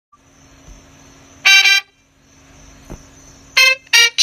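Two short, loud horn-like blasts, one about a second and a half in and one near the end, each a steady buzzy tone, over a faint steady hum.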